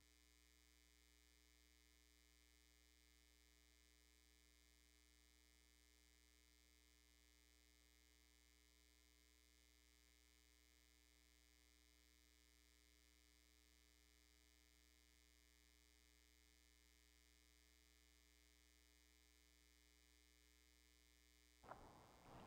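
Near silence: a faint, steady electrical hum with low hiss, broken by a sudden louder noise just before the end.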